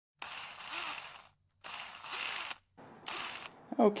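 Three short bursts of mechanical noise, each about a second long, with silent gaps between them.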